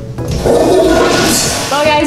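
Public restroom toilet flushing: a loud rushing whoosh that starts about a third of a second in and dies away. A woman's voice begins near the end.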